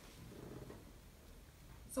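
Quiet room tone with a faint low rumble in the first second.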